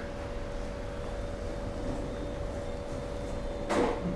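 Steady background noise of a room with a faint, steady hum, and one brief sound near the end.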